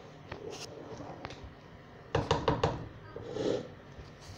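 Kitchen handling noises: a quick run of four or five sharp knocks and clatters about two seconds in, then a brief softer rustle.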